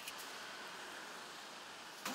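Street sweeper's broom brushing over the pavement, a faint steady scratchy hiss, with a louder stroke right at the end.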